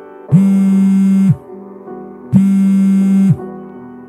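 Mobile phone ringtone: a loud synthesized tone that sounds for about a second and then stops for a second, heard twice. Soft background piano music plays underneath.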